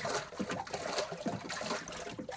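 Water sloshing and splashing in a small acrylic wave tank as a hinged paddle is pushed up and down in it to make waves.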